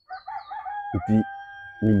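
A rooster crowing: one drawn-out call that holds a steady pitch for over a second before trailing off.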